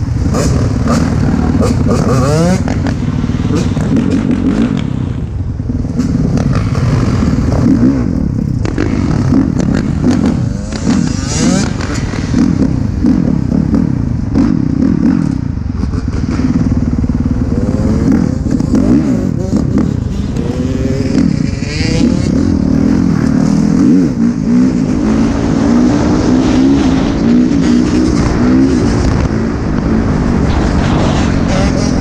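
Several dirt bike engines revving up and down through the gears, their pitches rising and falling and overlapping one another.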